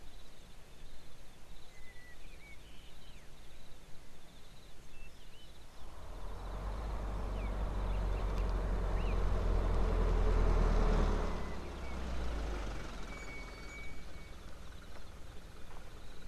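A car driving on a dirt track: a low engine and tyre rumble that swells from about a third of the way in, peaks, and fades away toward the end. Scattered short bird chirps sound over the outdoor background.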